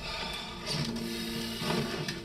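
Quiet, tense film underscore: a few sustained low tones over a haze of noise, with a couple of soft knocks.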